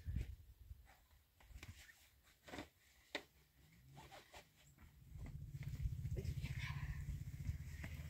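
Scattered light knocks and scrapes of stones and earth being handled by hand. About five seconds in, a steady low rumble sets in.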